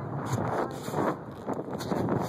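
Wind buffeting a phone microphone as it is carried along on a moving bicycle: a rough, uneven rumble that swells and dips.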